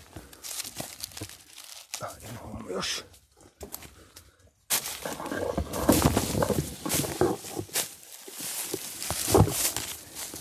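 Rustling and crackling of dry leaf litter and twigs underfoot, mixed with handling noise from a moving phone camera. It drops almost silent a little before the middle, then starts again suddenly and louder.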